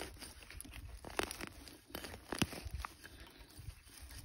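Stainless steel shovel blade cutting into ground covered in dry pine needles and leaves to dig out a plug, with a few sharp crunches as it goes in.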